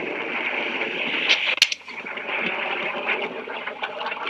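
Steady rushing of wind on the microphone of outdoor amateur footage, with one sharp crack about a second and a half in.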